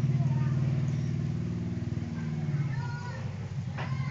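A small engine running steadily, a low hum that eases off slightly about three seconds in, with faint high chirps above it.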